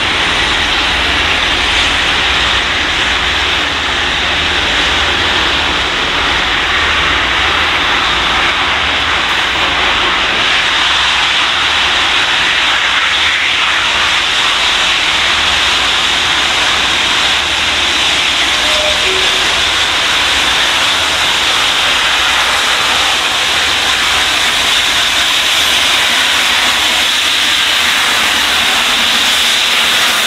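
Safety valves of the LNER Peppercorn A2 Pacific steam locomotive 60532 Blue Peter blowing off as it approaches: a loud, steady hiss of escaping steam with no exhaust beat heard. The valves have lifted because the boiler is at full pressure.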